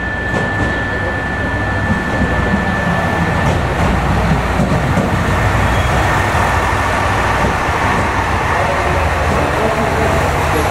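A JR West Super Matsukaze limited express, a KiHa 187 series diesel multiple unit, pulls slowly into a station platform, its engines and wheels rumbling steadily. The sound grows a little louder as the cars come alongside from about two seconds in. A thin high whine carries through the first three seconds.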